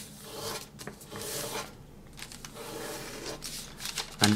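Sheet of thin Kami origami paper rubbing and sliding under the fingers as it is folded and the crease is pressed down, in three or four long strokes after a sharp tick at the start.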